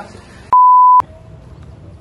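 A censor bleep: one steady, high-pitched beep lasting about half a second, starting about half a second in, with all other sound cut out under it.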